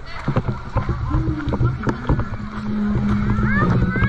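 Voices of people on a beach, with scattered knocks and a steady low-pitched drone from about halfway through, and short rising calls near the end.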